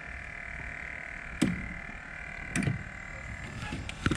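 A hooked peacock bass thrashing at the surface beside an aluminium jon boat as it is brought in on a fly rod: two brief sharp sounds about a second apart, over a steady faint background.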